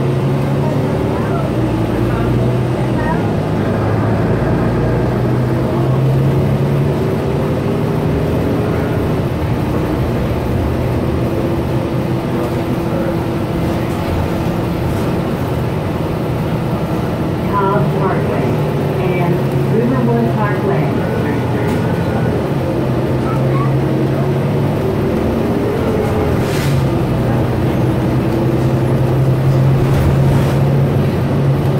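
A Gillig BRT clean-diesel transit bus heard from inside the passenger cabin while it drives. The engine and drivetrain run steadily, their note rising and falling as the bus speeds up and slows.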